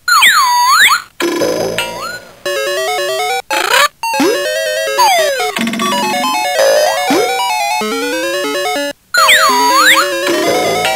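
Playskool Busy Ball Popper's electronic sound chip playing a swooping sound effect that falls and rises in pitch. Then comes a short, bouncy synthesized tune of stepped beeping notes, and the swoop comes again near the end.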